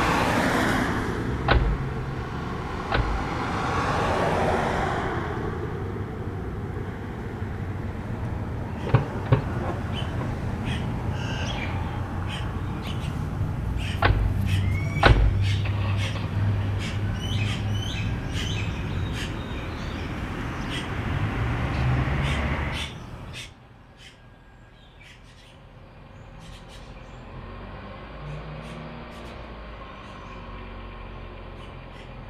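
A car's doors shutting with several knocks, then its engine running as it pulls away, with birds chirping. About 23 seconds in, this cuts to a much quieter outdoor hush.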